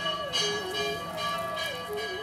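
Metal temple bells struck repeatedly, about twice a second, their ringing overlapping, over a slow single-line melody.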